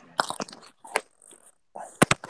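Scattered clicks and crackles from a voice-chat microphone that is cutting in and out while it is being adjusted, with brief broken-up fragments of a voice.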